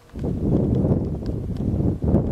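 Wind buffeting the microphone in gusts: a loud low rumble that comes in suddenly a moment in and dips briefly near the end.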